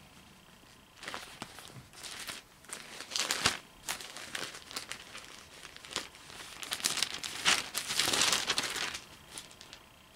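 Pages of a book, a Bible, being leafed through: paper rustling and crinkling in irregular bursts with small flicks, busiest about three quarters of the way in.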